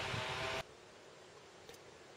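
Steady background hiss that cuts off abruptly about half a second in, leaving near silence with a faint tick near the end.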